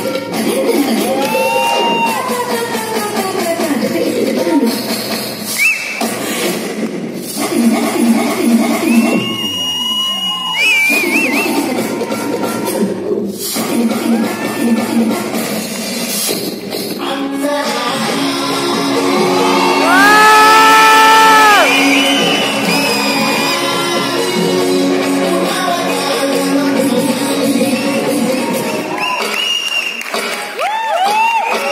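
A loud dance-music mix with sung vocals played over the PA system in a large hall, for a group dance routine. There is a loud held chord about two-thirds of the way through.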